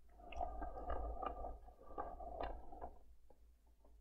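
Plastic display turntable turned by hand, rotating with a rough rumbling whir and a few clicks for about three seconds, then stopping. A few faint clicks follow near the end.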